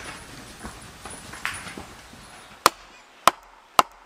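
A wooden baton striking the back of an axe head, driving the blade into an upright log: three sharp knocks about half a second apart, starting a little past halfway after a stretch of faint background noise.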